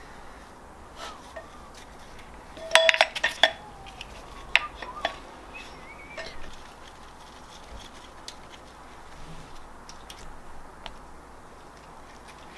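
Metal clinks and light taps as a camshaft is laid into the bearing saddles of a VR6 cylinder head. A quick run of ringing clinks comes about three seconds in, followed by a few scattered taps.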